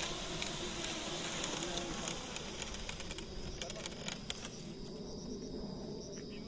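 A steady hiss with a few scattered clicks in its latter part drops away about five seconds in, leaving crickets chirping steadily.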